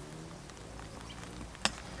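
A single sharp knock about one and a half seconds in, the cricket ball striking the stumps as the batter is bowled, over quiet outdoor ambience.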